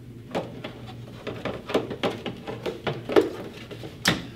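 Handling sounds of a revolver being unwrapped from a yellow wrapping and lifted out of a blue plastic gun case: a string of rustles, clicks and small knocks, the sharpest about three seconds in.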